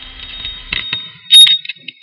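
A run of clicks and metallic clinks, the loudest a sharp clink about one and a half seconds in.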